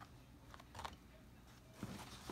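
Small embroidery scissors snipping jump-stitch threads on an embroidered denim panel: a few faint, short snips, two close together around the middle and one near the end.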